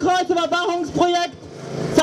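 A woman speaking German into a handheld microphone. About two thirds of the way in, her voice breaks off and a rushing noise swells up.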